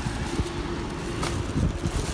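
A plastic bag rustling and rubbing against the phone as it is carried, over a steady low hum, with a few soft knocks.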